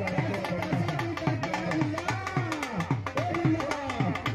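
Dhol drum played live in a steady rhythm: deep strokes that drop in pitch, two or three a second, mixed with sharp stick clicks.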